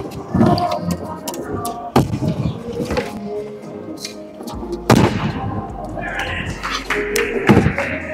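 Stunt scooter hitting the skatepark surface: a few sharp thuds from its wheels and deck, the loudest about five seconds in as the rider comes down from a jump, with rolling wheels between them.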